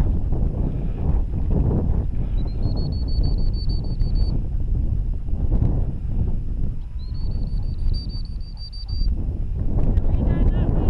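Wind buffeting an outdoor camera microphone, a steady low rumble. It is crossed twice by a high, thin, fluttering tone lasting about two seconds, at about two and seven seconds in.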